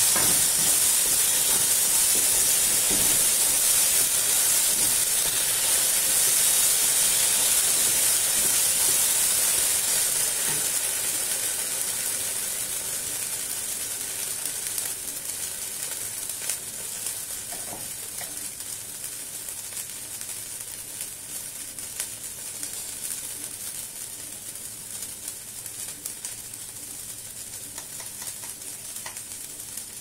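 Ground green-pea paste frying in oil in a nonstick wok, a steady sizzle that slowly dies down over the second half. A wooden spatula stirs it at first.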